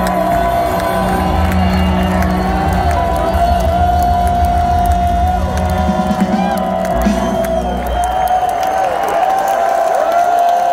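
A live rock band playing loudly through a large outdoor PA, recorded on a phone in the crowd, with a held high note on top. Audience members whoop and cheer throughout. The bass and drums drop out about eight seconds in while the high note rings on.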